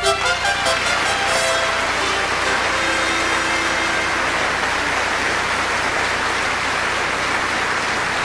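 A brass fanfare ends about a second in, and a large audience keeps up steady applause.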